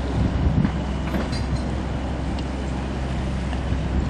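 The small tug's engine running steadily as it pushes a car-ferry float across the water, a low rumble, with wind gusting on the microphone in the first second.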